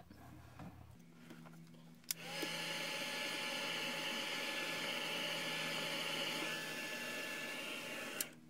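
A small electric blower motor starts suddenly about two seconds in and runs at a steady whir with a faint whine, then switches off just before the end.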